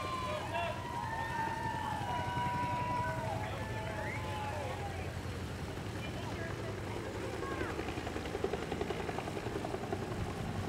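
A crowd cheering and shouting, many voices calling at once, with a busier stretch near the end. A steady low engine drone runs underneath.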